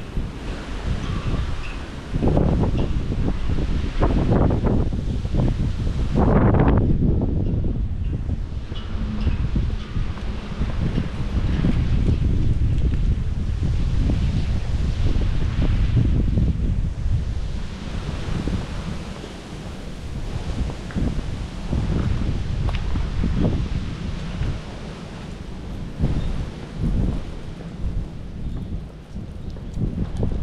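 Wind buffeting the microphone in gusts, a low rumble that swells and fades.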